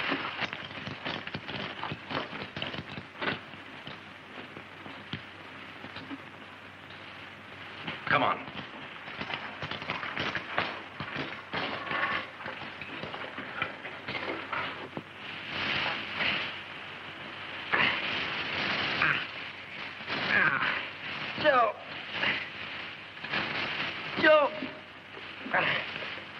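Dry hay rustling and crackling as it is prodded and shifted with a pitchfork, with scattered clicks and knocks and brief muffled voices at times.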